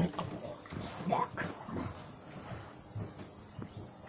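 A person's voice making wordless sounds, over a faint high chirp repeating about twice a second.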